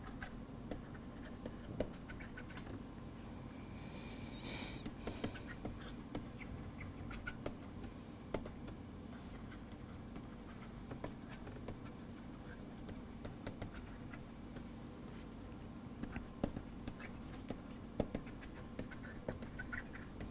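A stylus writing on a tablet computer's screen: light taps and short scratchy strokes throughout, with a longer scratching stroke about four and a half seconds in. A faint steady hum runs underneath.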